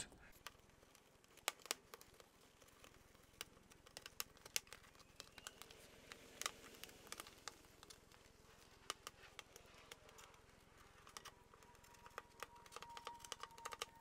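Faint, scattered ticks and crackles of double-sided sticky tape being peeled and picked off painted car bodywork by fingers; the adhesive is stickier than hoped.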